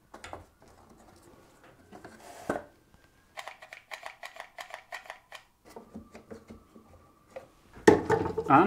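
A single knock, then about two seconds of rapid, evenly spaced clicking, roughly eight a second, typical of a hot glue gun's trigger being pumped to push glue onto a small MDF block. Fainter clicks and handling noise follow.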